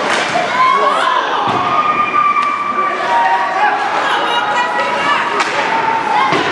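Ice hockey game sounds: voices shouting over the play, with sharp clacks and thuds of sticks, puck and boards.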